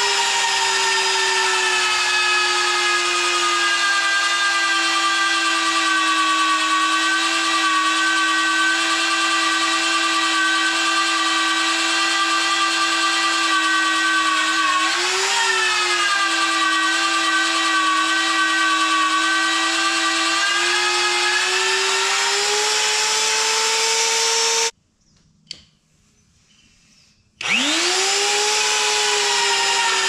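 VEVOR magnetic drill motor whining steadily as its annular cutter bores through the steel frame. The pitch wavers briefly about halfway through and creeps up after about twenty seconds. Near the end the sound cuts out abruptly for about two seconds, then the motor spins back up with a rising whine.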